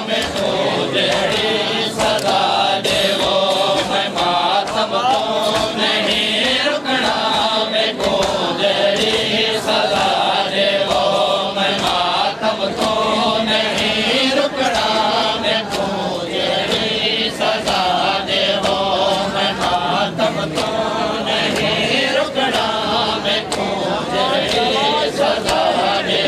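A group of men chanting a noha in unison, with regular sharp slaps of hands on bare chests (matam) keeping the beat.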